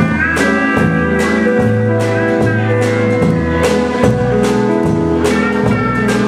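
Live blues band playing an instrumental passage with a steady beat, electric guitar and drum kit over a walking bass line, with no singing.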